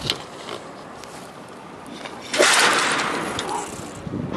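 Rushing air noise during a rope jump's free fall: a steady hiss, then a sudden loud whoosh about two and a half seconds in that fades over about a second.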